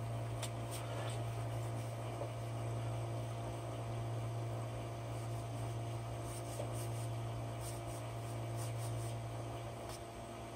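Steady low electrical hum, with a few faint ticks scattered through it.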